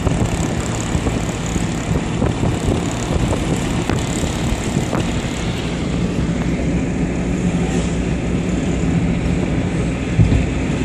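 Steady rumble of road and wind noise inside a moving car.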